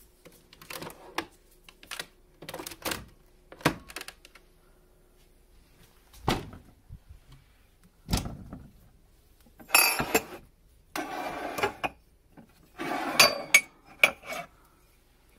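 Handling of a capsule coffee machine and its things: a string of sharp clicks and knocks, then several longer bursts of rustling and clattering as capsule boxes and mugs are moved about.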